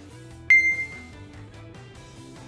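Background guitar music, with a single bright metallic ding about half a second in that rings out clearly for about half a second.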